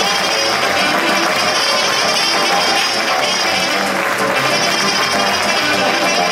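Live Banat folk music from a Romanian folk orchestra: saxophones, violins, cimbalom, double bass and accordion playing together at a steady, loud level.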